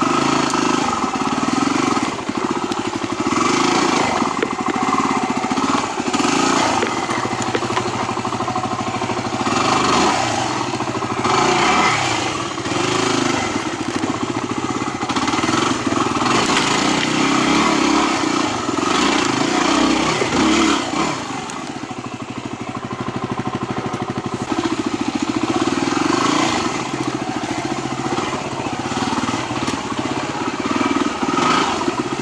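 Yamaha WR250R's single-cylinder four-stroke engine, heard on board, running at low to mid revs on a slow trail ride, the revs rising and falling with the throttle. It eases off briefly a little past two-thirds through.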